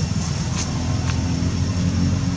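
A motor vehicle's engine running steadily with a continuous low rumble, over a thin, steady high tone.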